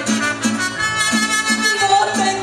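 Mariachi band playing an instrumental passage between verses: trumpets holding long melody notes over a steady strummed guitar and bass pulse.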